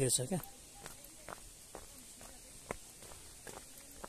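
Footsteps on a dirt path, a faint step about every half second, after a short laugh at the start.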